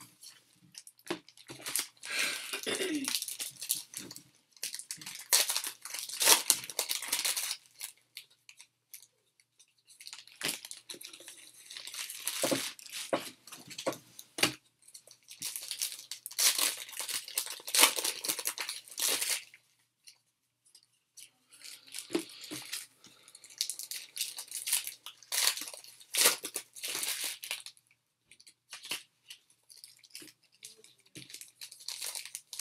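Foil trading-card pack wrappers being torn open and crinkled, in several bursts of crackling with short pauses between, mixed with the light snap and shuffle of cards being handled.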